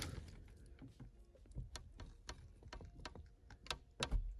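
Faint, irregular clicks and creaks from the rubber seal of a BMW E36 coupé's manually opened rear side window as the glass is pushed open: the sound of a seal that is a little stuck to the frame.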